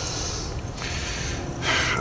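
A person breathing, with a sharp intake of breath near the end just before speaking, over a steady low background rumble.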